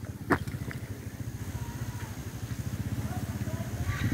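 A motorbike engine idling with a steady low pulse, growing slightly louder toward the end, with one short click about a third of a second in.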